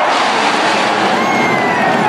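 A formation of F-16 fighter jets flying low overhead. Their jet roar, a loud rushing noise, comes in suddenly at the start.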